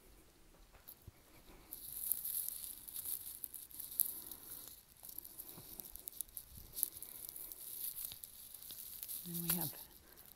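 Rustling handling noise with light clicks and ticks from a handheld camera being carried through the rooms. It starts about two seconds in. A brief bit of a man's voice comes just before the end.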